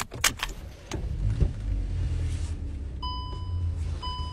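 Car interior handling noises: a few clicks and knocks as the driver's door is opened, with a low rumble. About three seconds in, the car's steady electronic warning chime starts, the kind that sounds with the door open.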